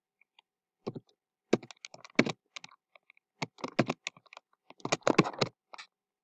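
Computer keyboard keys clicking in several short bursts of typing.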